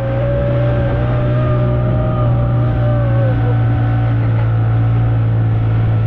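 Small outboard motor on an inflatable dinghy running at speed, a loud, steady low drone. A man's voice holds one long note over it for the first three seconds or so.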